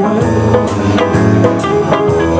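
Live band playing a song: drum kit with cymbals, bass, guitar and piano.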